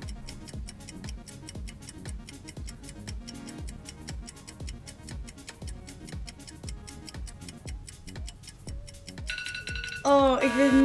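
Countdown-timer music: fast, even clock-like ticking over a steady low beat. About nine seconds in, a steady high buzzer tone sounds as the countdown runs out.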